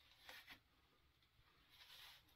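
Near silence, with two faint, brief rustles of fabric as the shorts' waistband is handled: once just after the start and once near the end.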